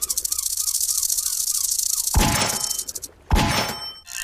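Online slot machine game sound effects: a fast, even rattle of the reels spinning, then two sudden stop sounds with ringing tones as the reels land, about two seconds in and again just over three seconds in.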